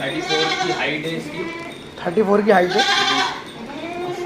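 A goat bleating twice: two long, wavering calls about a second and a half apart, the second louder.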